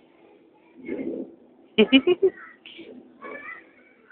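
A person laughing in a short run of quick bursts, then a brief spoken 'okay' and a little more laughter.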